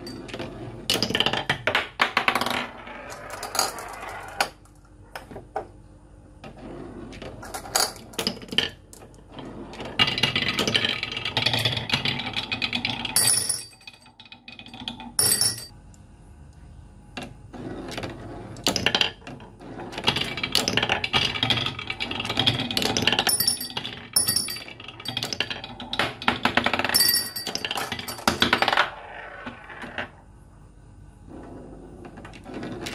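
Glass marbles rolling along a wooden marble-run track. Several spells of rolling noise, each a few seconds long, are broken by sharp clicks and clacks as the marbles knock against and drop between the wooden pieces.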